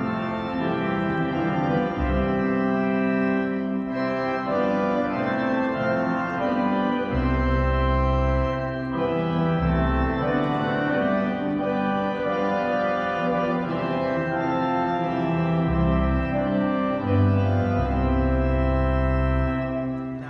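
Church organ playing a hymn in sustained full chords on the manuals, with deep bass notes from the pedal board coming in and dropping out several times.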